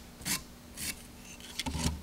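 Fine sandpaper rubbed by hand over the tip of a wooden dowel, smoothing the edges in a few short strokes about half a second apart.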